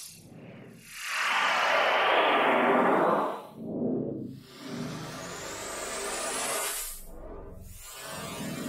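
Synthesized trap sound effects played one after another: a loud noise sweep falling in pitch over about two seconds, a short burst, then a longer riser climbing in pitch that cuts off suddenly about seven seconds in, leaving a low rumble.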